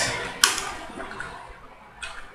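Computer keyboard keys pressed while typing code: one sharp click about half a second in, then a few fainter ticks.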